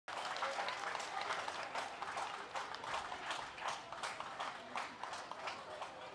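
A small crowd of spectators clapping: a spread of quick, irregular handclaps that eases a little toward the end.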